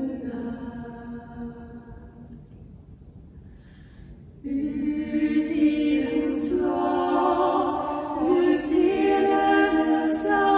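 Women's a cappella vocal ensemble singing in several parts. A sung phrase fades away over the first couple of seconds, a short near-pause follows, then the voices come back in together about four and a half seconds in and carry on.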